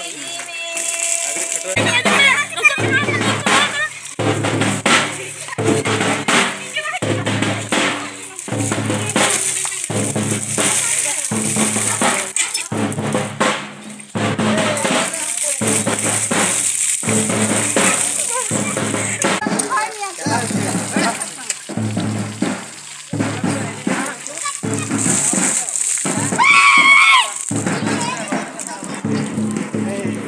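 Large double-headed drums beaten with sticks in a steady rhythm, about one heavy beat a second, with voices over them and a brief higher call near the end.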